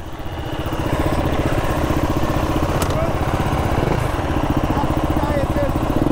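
Dirt bike engine idling with a steady, even pulse, growing a little louder over the first second and then holding level.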